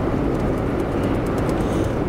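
Steady road and engine noise inside the cabin of a moving vehicle.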